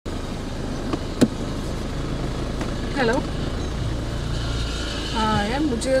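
Car engine running at low speed, a steady low rumble heard from inside the cabin, with a sharp click about a second in.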